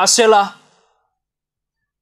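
A man's speaking voice ends a phrase about half a second in, followed by silence.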